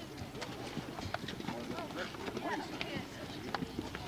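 Many children's footsteps clicking and scuffing on concrete steps as a crowd climbs, irregular and overlapping, with children's voices chattering throughout.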